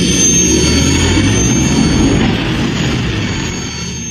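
Sci-fi spaceship engine sound effect, in the manner of the Millennium Falcon: a loud steady rumble with a thin high whine above it, slowly fading near the end.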